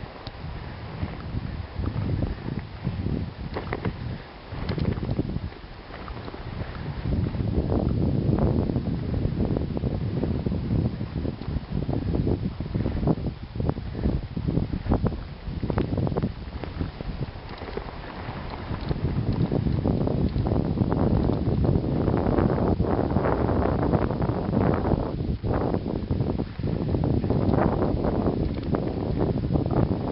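Wind buffeting the microphone over the rushing, crunching noise of a dog-team rig running over snow behind four harnessed Alaskan Malamutes. The noise is rough and uneven and grows louder about a third of the way in.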